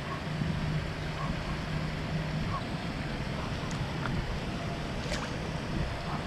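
Steady outdoor rushing noise of wind on the microphone and flowing water, with a low steady hum in the first couple of seconds and a faint click about five seconds in.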